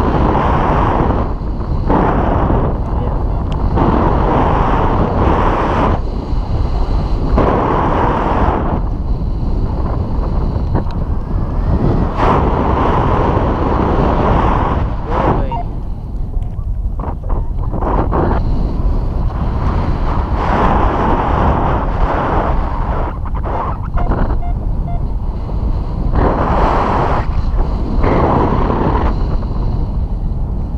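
Loud wind buffeting an action camera's microphone in paraglider flight: a continuous rushing roar that swells and eases every second or two.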